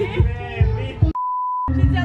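Background music with a steady beat, cut about a second in by a half-second single-pitch censor bleep, with the music silenced beneath it before it resumes.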